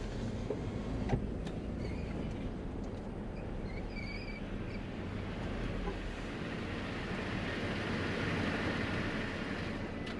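Pickup truck heard from inside the cab while rolling slowly and pulling up. There is a steady low engine hum and road noise, and the deepest rumble eases about six seconds in as the truck comes to a stop. A couple of faint high chirps come a few seconds in.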